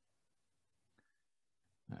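Near silence: faint room tone, with one small click about a second in.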